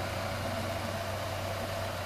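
1998 Ford Ranger's 2.5-litre four-cylinder engine idling steadily under the open hood, running smoothly with no misses, in good running condition.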